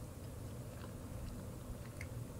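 Faint chewing of a mouthful of pizza cheese.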